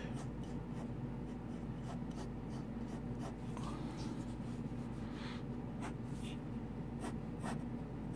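Pencil lead sketching on paper: light, scattered scratchy strokes of drawn lines and an ellipse, over a steady low hum.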